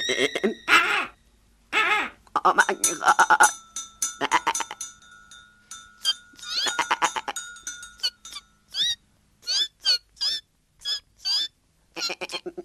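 Animated-film sound effects: a goat bleating in wavering calls several times through the first half. Near the end comes a run of short, separate rising chirps.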